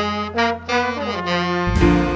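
Jazz sextet playing: trombone, trumpet and tenor saxophone sounding a melody line together over upright bass and drums, with a loud accented chord near the end.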